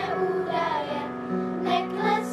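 A girls' children's choir singing together to electronic keyboard accompaniment, the keyboard holding sustained low notes under the voices and changing chord about halfway through.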